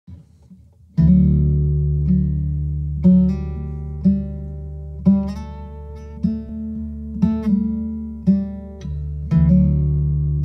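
Solo acoustic guitar playing a slow intro: starting about a second in, a chord is struck about once a second and left to ring.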